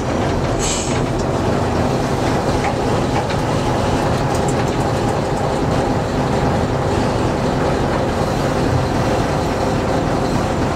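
Small diesel shunting locomotive running along the line, heard from inside its cab: a steady engine drone mixed with the rumble of wheels on rail.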